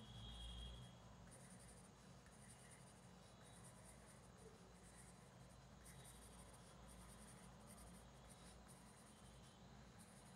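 Faint scratching of a pink pencil on paper, a run of short, irregular strokes as fine lines are sketched and shaded in a drawing.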